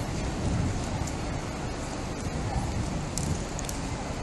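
Outdoor street ambience: a steady hiss with an uneven low rumble of wind on the microphone, and a few faint ticks near the end.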